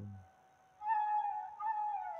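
Soft background music: a flute holds one long note, coming in about a second in after a short gap.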